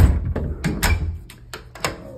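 An interior door being opened by its knob: a sudden thump at the start, then several sharp clicks of the knob and latch.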